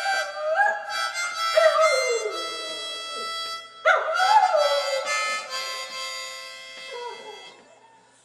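A Jack Russell terrier howling along to a harmonica: long wavering howls that slide up and down in pitch over the harmonica's held chords, in two long runs with a shorter one near the end, before both fade out.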